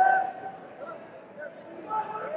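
Short shouts from voices echoing across a large arena, over a steady murmur of crowd noise.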